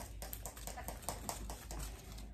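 Artificial greenery stems rustling and scraping against a dry grapevine wreath as they are worked in by hand: an irregular run of small crackles and taps.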